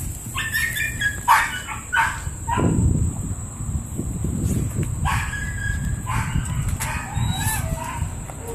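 A dog barking and yipping in short separate bursts, several times, with a longer run of calls in the second half.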